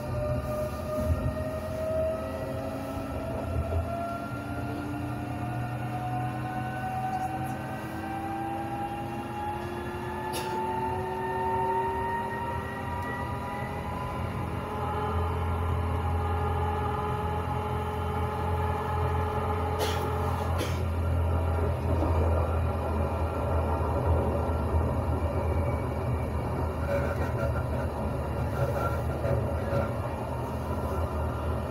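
Electric tram running on rails: its traction motors whine in a pitch that rises through the first dozen seconds as it gathers speed, then holds steady. From about halfway the low rolling rumble of the wheels grows louder, and a few sharp clicks come through.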